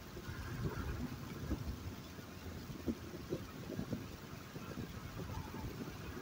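Low rumble of a car driving along a city road: steady road and engine noise with uneven low thumps.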